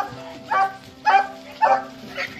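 A malamute-type dog making four short woofing vocal calls, about two a second, as if talking back after being scolded.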